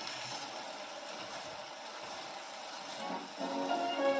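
Steel needle of a Victrola acoustic phonograph running in the lead-in groove of a 1931 Hit of the Week Durium record: steady surface hiss. About three seconds in, a dance-orchestra fox trot starts playing through the horn and grows louder.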